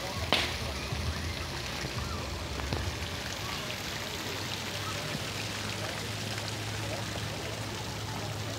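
Fountain water splashing steadily into its pond, with a single brief click near the start.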